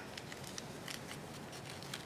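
Faint rustling of shorts fabric and kinesiology tape being handled, with a few soft ticks, as the tape strip is fed under the shorts.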